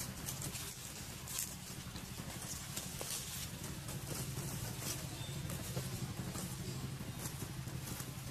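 Scattered crackles and rustles of twigs and leaves as a baby macaque climbs through thin branches, over a steady low hum.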